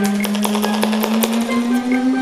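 Rapid handclaps, about six to eight a second, over one long held vocal note that rises slightly in pitch.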